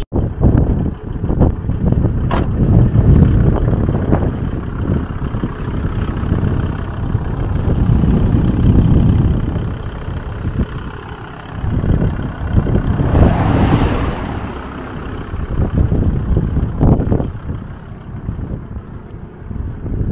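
Strong wind buffeting the microphone in gusts, a rumbling rush that swells and drops every few seconds, with a harsher gust about two-thirds of the way through.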